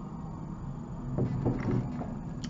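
A person drinking from a mug, with a few soft swallowing sounds about a second and a half in, over a steady low hum.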